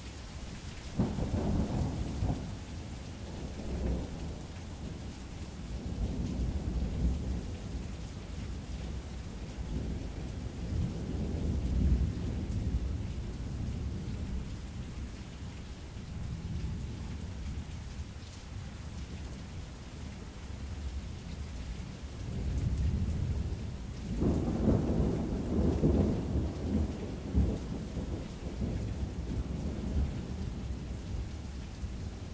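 Rain-and-thunder ambience: steady rain hiss with rolling thunder rumbles, loudest about a second in and again from about 24 seconds.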